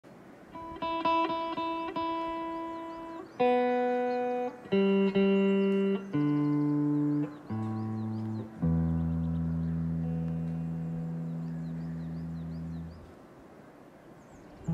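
Electric guitar playing a slow line of single sustained notes, each held about a second, stepping down in pitch. It ends on a long low note that rings for about four seconds and fades out near the end.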